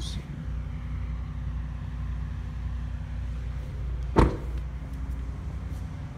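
A pickup truck's door shut once with a sharp, loud thud about four seconds in, over a steady low hum.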